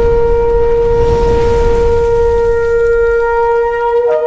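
A shofar sounding one long, steady blast, with a low rumble underneath.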